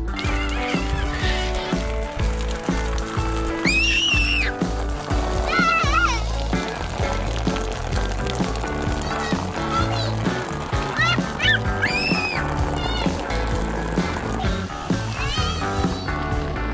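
Background music, over which a young child's high-pitched squeals rise and fall a few times, about four, six and eleven to twelve seconds in.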